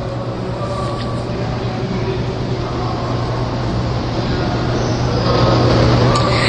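A steady low hum under a continuous rushing noise, slowly growing louder.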